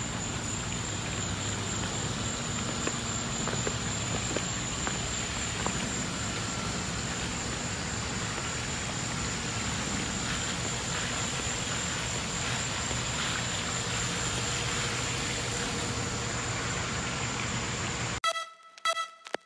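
Steady outdoor night-time ambience: a continuous hiss with a constant high-pitched whine over it and a few faint ticks.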